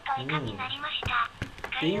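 A man speaking, with two short clicks around the middle.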